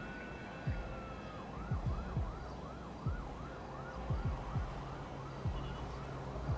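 An emergency-vehicle siren: one slow wail rising and falling, then about a second and a half in switching to a fast yelp that sweeps up and down about three times a second. Low thumps recur underneath at uneven intervals.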